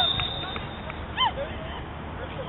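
A referee's whistle blast, a steady high tone that stops about half a second in, then short shouts from players on the pitch, the loudest about a second in.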